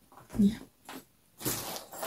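A short voiced sound about half a second in, then rustling and crinkling as a handbag and its paper stuffing are handled.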